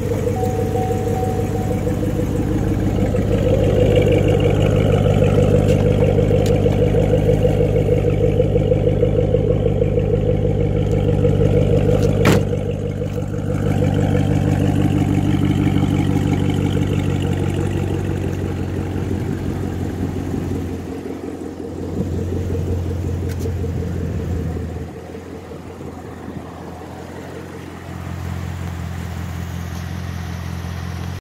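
Chevrolet Camaro ZL1's supercharged 6.2-litre V8 idling with a steady, deep exhaust rumble. A single sharp click sounds about twelve seconds in, and the engine grows quieter after about twenty-five seconds.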